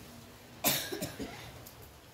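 A person coughing: one sharp cough just over half a second in, followed by a weaker cough about a second in.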